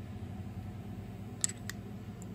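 Steady low room hum with two light, sharp clicks close together about a second and a half in, like small hard objects being handled.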